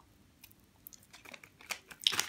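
Faint, scattered little clicks and crackles from a child eating a popping-candy lollipop: the candy crackling in her mouth, mixed with small mouth sounds.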